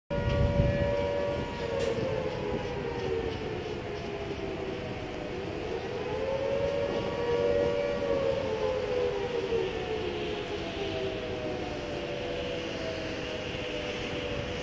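Quarry blast-warning siren wailing, its pitch slowly falling, rising again and falling once more: the warning that a blast is about to be fired.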